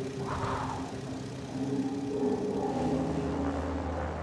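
A light propeller plane's engine drones steadily, heard from inside the cockpit, under a music bed of sustained tones. A brief whoosh comes about half a second in, and the low rumble grows fuller partway through.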